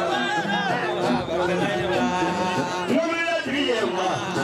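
A man's voice calling out or declaiming in Bambara over hunters' music, with a donso ngoni (hunter's harp) repeating a short plucked figure of low notes underneath.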